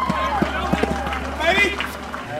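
Voices calling out at a ball field over a low steady hum, with a few short sharp knocks in the first second.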